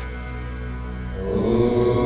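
Slow, meditative background music of held tones. A little over a second in, a fuller, chant-like held tone comes in and the music gets louder.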